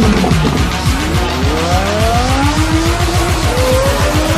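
Ferrari sports car engine accelerating hard, its note rising steadily in pitch over about two seconds, under loud music.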